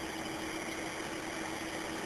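Steady recording hiss with a faint steady hum underneath, and no voice or other event in it: the noise floor of an audio recorder in a quiet room.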